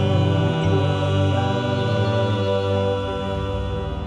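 A small gospel vocal group singing into microphones, holding a long, steady chord that eases off slightly near the end, as at the close of a song.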